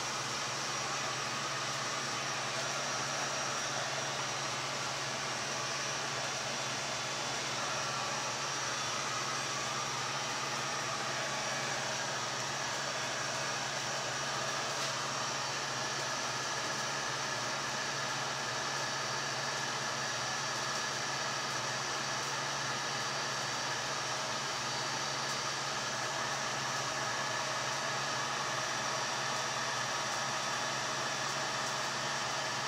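Electric heat gun running steadily, a constant whirring blow of hot air used to pop air bubbles in a wet coat of white acrylic pouring paint.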